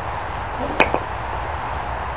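A single sharp chop of a hand tool striking a split yew stave, followed a moment later by a smaller knock, over a steady hiss.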